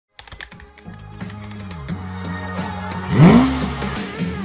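Intro jingle: music with sharp clicks like keyboard typing at the start, building up to a loud sweep that rises and falls about three seconds in.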